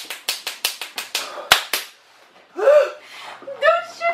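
A rapid run of about ten sharp hand slaps, about six a second, stopping about two seconds in: a man slapping his hands in pain from an extremely hot chili chip. A short pained vocal sound follows, then more voice near the end.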